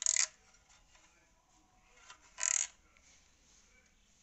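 Handling noise as the electric iron is moved by hand: two brief scraping rustles about two and a half seconds apart.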